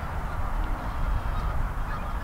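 Steady rumbling wind noise on the microphone by open water, with a few faint short honking calls a little over half a second in.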